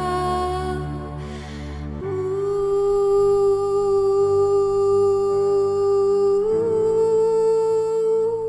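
A woman's voice humming long, held notes over a low sustained drone in a slow meditative music piece. A short breath is heard before a long note begins about two seconds in, and the pitch steps up about two-thirds of the way through.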